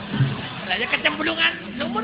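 Speech: a man talking in Javanese, wayang kulit character dialogue voiced by the dalang.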